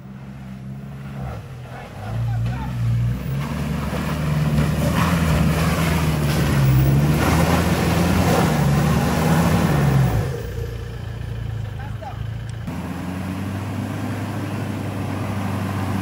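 Toyota Hilux pickup's engine working hard as the truck drives through deep mud, with its tyres churning. The engine climbs in pitch and level from about two seconds in and is loudest through the middle. About ten seconds in it eases back to a steadier, lower run.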